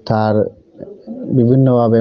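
A man's voice: a short spoken syllable, then after a brief pause a drawn-out, nearly level vowel or hum held for most of a second.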